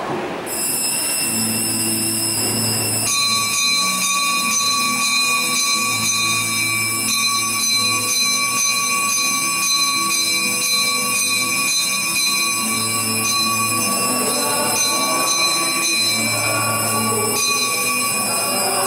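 Music of held, organ-like chords: several steady high notes sustained throughout, shifting about three seconds in, over a bass line that changes every second or two. Faint singing comes in near the end.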